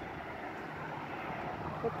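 Steady outdoor background noise, a low even rumble with no distinct events; a voice comes in near the end.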